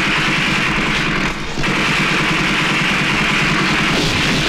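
Film sound effect of sustained rapid gunfire, a dense unbroken rattle that breaks off briefly about a second and a half in, then resumes.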